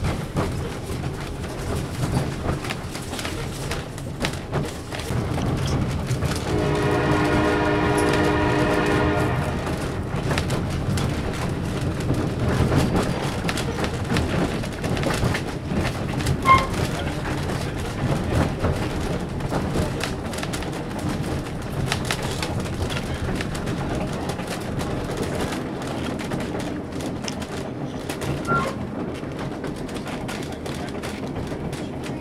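Steady rumble and clatter of a passenger coach rolling on the rails, with clicks from the wheels. About six seconds in, the diesel-electric locomotive's horn sounds once for about three seconds, a warning ahead of a road crossing.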